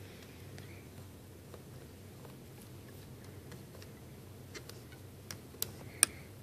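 Faint room tone with a few light clicks of fingers handling a clear plastic Rainbow Loom and its rubber bands, mostly in the last second and a half.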